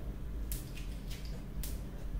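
Chewing a rice paper roll packed with fresh herbs and vegetables: two short crisp mouth sounds, about half a second and a second and a half in, over a steady low hum.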